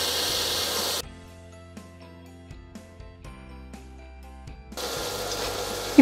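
Chicken pieces sizzling as they fry in a covered pan; the sizzling cuts off about a second in, leaving quieter background music of held notes alone for nearly four seconds, and the sizzling comes back near the end.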